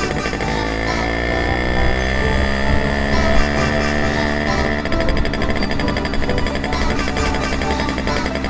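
Electronic background music with a steady beat, over a Simson moped's two-stroke engine running under way.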